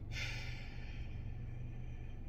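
A woman's long sigh of frustration: one breathy exhale that starts sharply and fades out over about a second.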